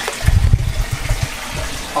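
An alligator splashing into a shallow pond and thrashing off through the water. The splashing is heaviest in the first half second, then the water keeps sloshing.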